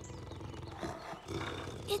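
Low growling of a cartoon saber-toothed cat, with a child's voice starting just at the end.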